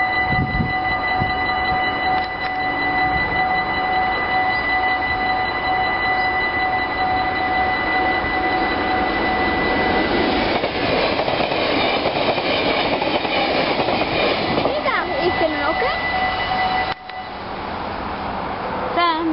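Dutch level-crossing warning bell ringing continuously, several steady tones at once. About halfway through, the rumble and rush of a train passing over the crossing build up over the bell. Both cut off abruptly shortly before the end.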